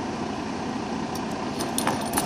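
Steady background rumble and hiss, like a vehicle running nearby, with a few faint clicks near the end.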